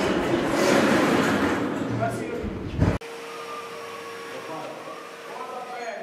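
People's voices and work noise, loud at first, then an abrupt cut about halfway to a quieter room with faint voices over a steady hum.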